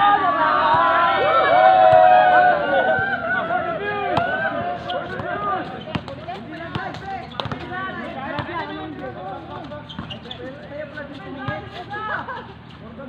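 Players' voices shouting and talking, loudest in the first few seconds, with a basketball bouncing on a hard court several times.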